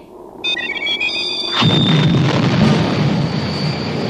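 Sci-fi sound effects: the summoning whistle's call as a cluster of high, steady electronic tones, then, about a second and a half in, a sudden rocket blast-off that runs on as a rumbling roar with a high tone held above it.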